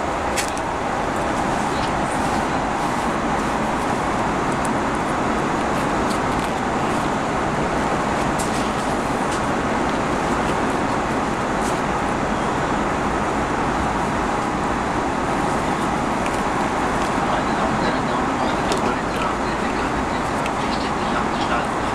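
Steady cabin noise inside an Airbus A330-300 airliner, with a few faint clicks and rustles as a zippered fabric pouch is handled and opened.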